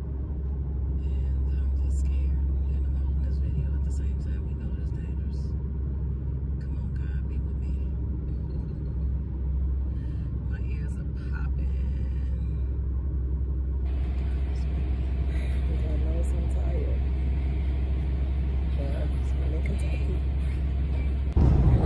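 Steady low rumble of road and engine noise inside a car cabin at highway speed, about 60 mph. About fourteen seconds in, a higher hiss joins the rumble.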